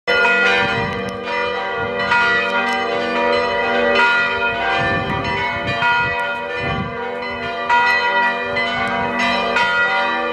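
Church tower bells ringing a peal: several bells struck in quick, uneven succession, their tones overlapping and ringing on continuously.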